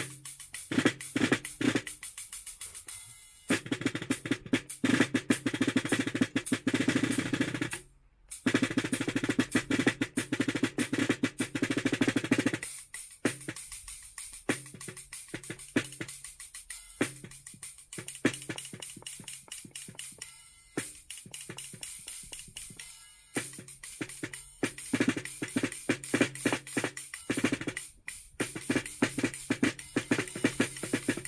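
Minimal acoustic drum kit played with sticks: snare drum, kick drum and cymbal in busy grooves with fast snare rolls and cymbal hits. The playing breaks off briefly about eight seconds in and again near the end before picking up.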